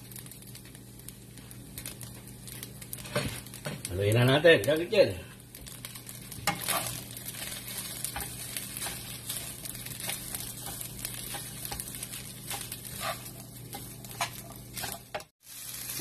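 Rice frying in a nonstick wok, sizzling steadily while a wooden spatula stirs it, with frequent small scrapes and taps against the pan as turmeric is mixed in for Java rice. A brief voice sound comes about four seconds in, and the sound cuts off suddenly shortly before the end.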